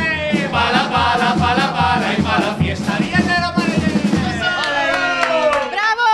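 A chirigota group singing a comic song together to a strummed Spanish guitar, over a steady beat of about two a second. About four and a half seconds in the beat stops and the voices hold a final note.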